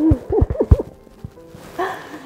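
Two people hugging: several quick soft thumps and brief short vocal sounds in the first second, then a short voice sound near the end, over faint background music.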